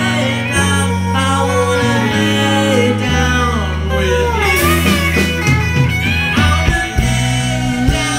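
Indie rock band playing live: electric guitars over a sustained bass line and drums, with a descending guitar line about four seconds in.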